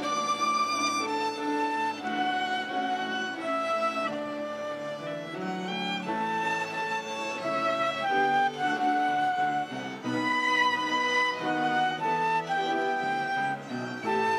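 Live instrumental ensemble led by violin, playing a slow melodic piece in long held notes.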